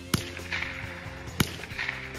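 Two .22 rifle shots, sharp cracks about a second and a quarter apart, over background music.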